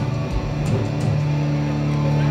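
Live punk rock band playing loud electric guitars and drums: a few drum hits in the first second, then a held guitar chord ringing on steadily from about halfway.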